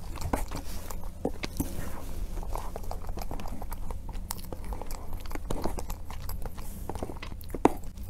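Close-miked mouth sounds of eating a soft cream cake with mango filling: wet chewing and lip smacks, with small clicks of a metal spoon scooping from the plastic box. One sharper click comes near the end.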